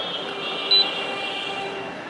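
A single short, high beep from the Canon imageRunner 2002N copier's control panel as the Counter Check key is pressed, over a steady faint hum.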